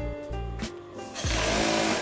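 Background music plays throughout; a little over a second in, a Brother industrial sewing machine runs a short burst of stitching, its pitch rising and falling as it speeds up and slows, the loudest sound.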